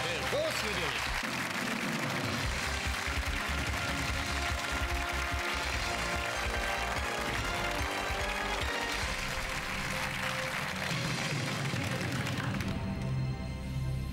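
Studio audience applauding over game-show music; the applause dies away about twelve and a half seconds in, leaving the music playing.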